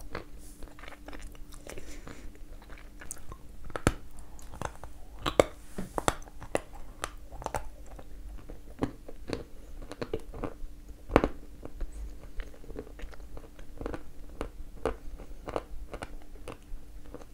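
A person biting and chewing a very dense, dry piece of edible clay, giving many sharp crunches, the loudest about 4, 5.5, 6 and 11 seconds in. The clay is so dense that even a small piece has to be bitten off with effort.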